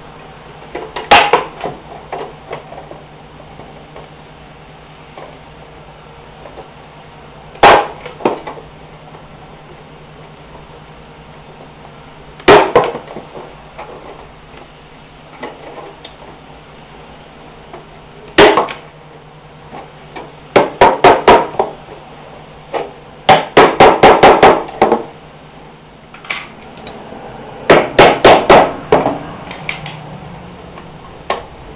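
Hammer blows driving fasteners into the plywood of a rabbit nesting box: single strikes every five seconds or so, then three quick runs of several strikes each in the second half.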